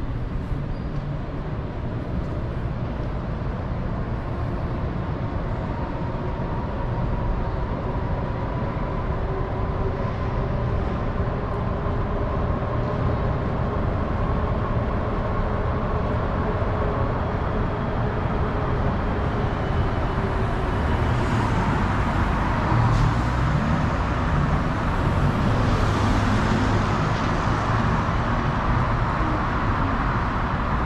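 Street traffic noise from passing vehicles, steady at first and growing louder over the last third as traffic approaches, with an articulated trolleybus coming by near the end.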